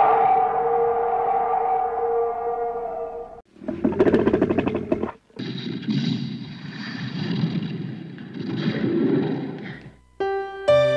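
Intro sound effects: a held tone that fades over about three seconds, then a rough, rapidly pulsing burst, and after a short gap a noisy swelling texture that dies away near the end.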